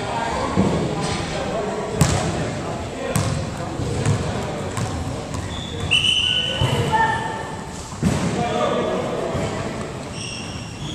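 A group jogging in sneakers across a hardwood gym floor, with short sneaker squeaks around the middle and a few sharp thuds of a basketball, among voices talking in an echoing gym.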